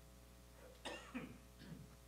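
A person coughing into a hand: three short coughs close together about a second in.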